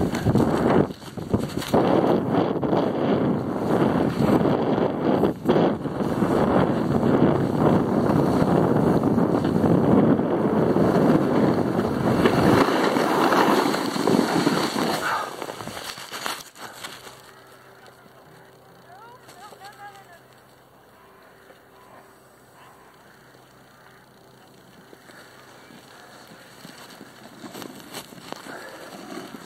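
Wind rushing over the microphone and snow hissing and scraping underfoot while riding down a slope in fresh snow, loud and continuous for about sixteen seconds. Then it stops abruptly, leaving a quiet background with a faint steady hum.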